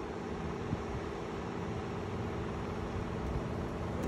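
Steady mechanical hum with a low droning tone under an even background hiss, with one faint tick under a second in.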